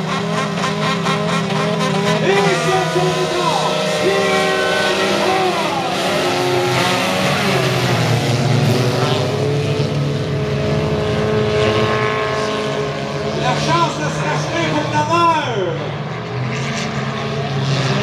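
Several four-cylinder stock car engines revving together as the pack pulls away from a standing start and races on a dirt oval. Their pitches overlap and rise and fall as the drivers accelerate, shift and lift.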